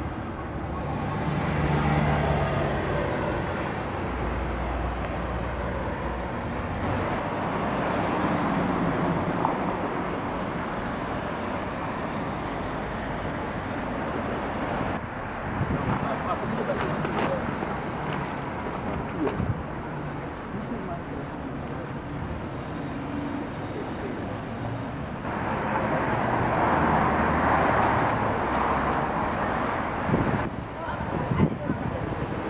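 City street traffic: cars driving past on the boulevard, a steady noise that swells a few times as vehicles go by, most strongly near the end.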